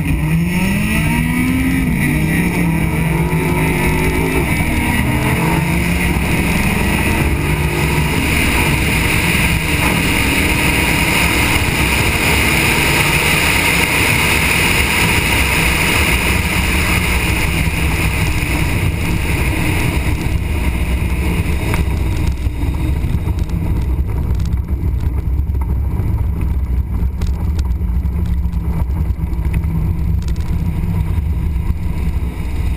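Dodge Viper's V10 engine heard from a camera mounted on its hood. Its pitch rises over the first few seconds, then it runs loud and steady, easing off after about 22 seconds.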